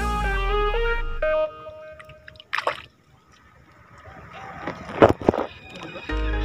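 Background music with a melody that stops about a second and a half in. It gives way to water sloshing against a small wooden outrigger boat, with a sharp splash about two and a half seconds in and two louder splashes around five seconds in.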